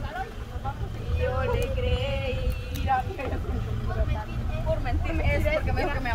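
Girls' voices singing and calling out from the bed of a slow-moving Toyota Hilux pickup, with one held sung note about a second in. Under them runs the low, steady rumble of the truck's engine.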